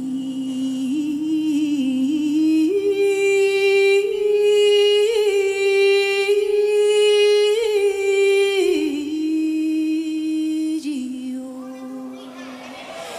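A woman singing slow, long-held notes. About three seconds in she rises to a higher note and holds it, then steps back down to lower notes near the end.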